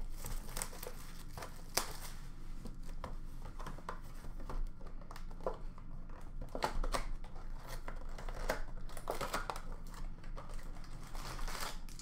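A cardboard Panini Select basketball mega box being opened by hand and its packs pulled out: irregular rustling of cardboard and pack wrappers with scattered light clicks.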